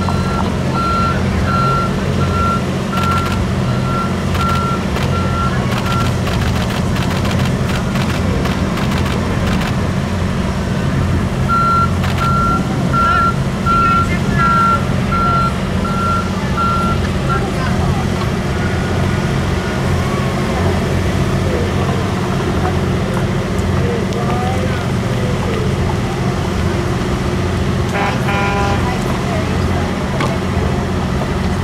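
A vehicle's reversing alarm beeping at an even pace over a steady low engine hum. The beeping runs for the first six seconds, stops, then comes back for about six seconds from twelve seconds in.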